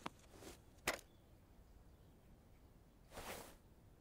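Near silence with two faint cartoon sound effects: a single short click about a second in, and a soft swish a little past three seconds in.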